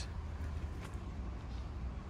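Quiet outdoor street ambience: a steady low rumble with a faint even hiss, and no distinct sound events.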